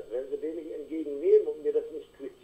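Speech: a caller talking over a telephone line, thin and indistinct, quieter than the studio talk around it.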